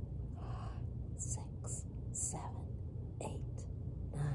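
A woman whispering a slow count, about six breathy numbers spread evenly over a few seconds, over a steady low hum.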